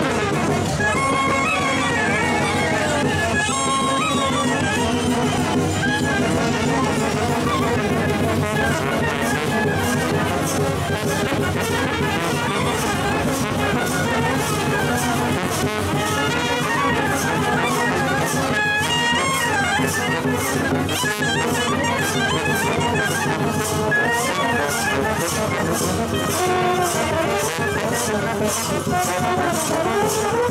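A Romanian village brass band (fanfară) plays a dance tune, with tubas and tenor horns carrying the melody and the bass line. From about a third of the way in, a steady beat of percussion strokes runs under the brass.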